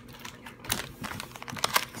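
Foil blind-bag toy packet crinkling and crackling as it is handled, a quick irregular run of small clicks.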